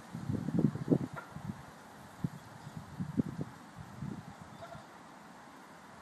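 Outdoor ambience recorded on a phone's built-in microphone, with irregular low gusts of wind buffeting the mic, heaviest in the first second or so and again around three to four seconds, over a steady faint hiss.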